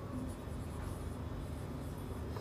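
Marker pen writing on a whiteboard: faint rubbing strokes as a word is written out by hand.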